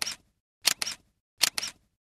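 Camera shutter sound effect: three quick double clicks, about three-quarters of a second apart.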